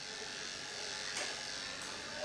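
Electric dog-grooming clippers running steadily on a dog's coat.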